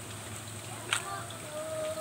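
Muddy stream water running steadily, with a single sharp click about a second in and a child's voice calling out near the end.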